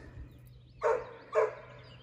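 A dog barking twice, two short barks about half a second apart.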